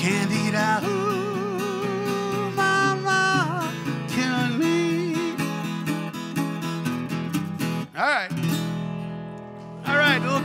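Dobro resonator guitar playing an instrumental blues break, with wavering held notes and a note sliding down and back up about eight seconds in.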